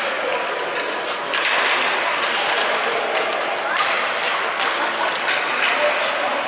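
Youth ice hockey play on a rink: skate blades scraping and carving the ice, with repeated clicks and clatter of sticks on the ice.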